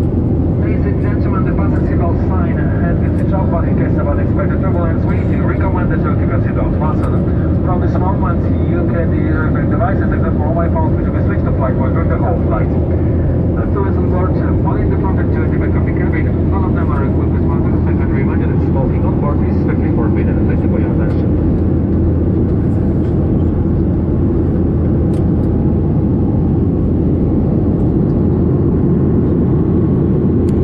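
Steady low drone inside the cabin of a Boeing 737-800 in flight, from its twin CFM56-7B engines and the airflow. Over the first two-thirds there is indistinct passenger conversation, which then fades out.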